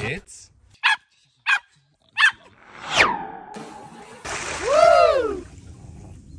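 A Jack Russell terrier gives three short, sharp barks. A high whistle then glides down and holds a steady tone, and a splash of water comes in with a rising-and-falling cry over it.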